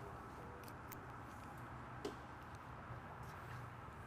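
Quiet workshop room tone with a faint low hum and a few small, faint ticks and clicks from the service hose and wand being handled.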